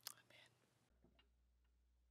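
Near silence: a brief soft sound right at the start, then a faint steady low hum of room tone.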